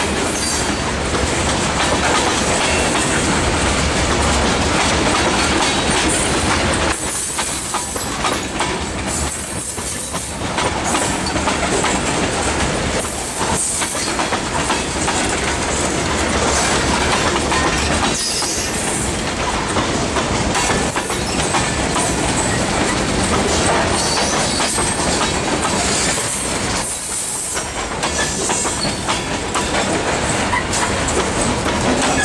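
Tank cars of a CSX manifest freight train rolling past close by: a continuous loud rumble of steel wheels on rail, with clattering over rail joints and now and then a wheel squeal.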